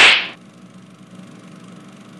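A short whoosh sound effect: a sudden rush of noise that fades out within about half a second, followed by faint steady background noise.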